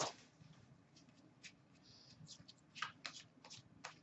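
Upper Deck hockey cards being flicked through by hand: a few faint, scattered flicks and taps, most of them in the second half.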